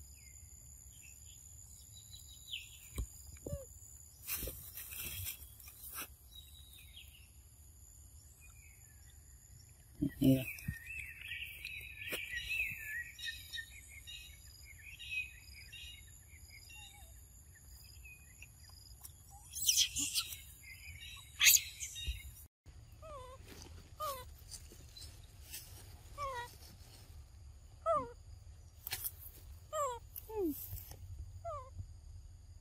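Outdoor forest ambience: a steady high-pitched insect drone with chirping calls and scattered clicks and knocks. A busy run of chirps comes about ten seconds in, and in the last seconds short falling calls repeat every second or so.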